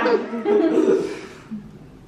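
A person chuckling and laughing briefly, then dying away in the second half.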